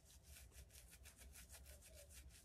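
Faint, rapid scratching of fingers rubbing a bearded chin, about ten strokes a second, over a low steady room hum.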